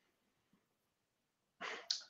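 Near silence, then near the end a short, sharp intake of breath before speaking.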